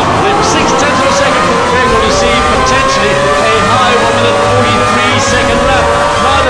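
Ferrari Formula One car engine heard from onboard at full throttle, its pitch climbing steadily as the car accelerates through the gears down a straight, with a commentator's voice over it.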